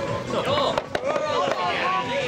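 Wooden skittle pins knocked over by a swung ball, a quick clatter of two knocks about a second in, under people talking and background music.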